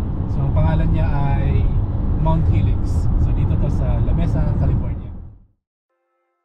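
Steady low rumble of a moving car, with voices talking over it; it fades out about five seconds in.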